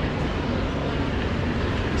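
A car approaching slowly along a city street, a steady engine and tyre noise.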